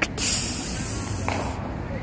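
A long hiss made with the mouth, a drawn-out "psss" lasting about a second and a half before it stops, in mimicry of gas being let out. Low traffic rumble runs underneath.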